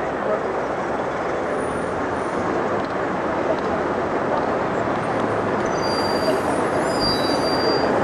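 Steady rolling noise of a pack of inline speed skaters' wheels on the road surface, mixed with spectators' voices. A few faint high, thin tones come in near the end.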